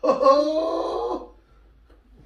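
A drawn-out wailing vocal cry, about a second long, sliding slightly in pitch before it fades.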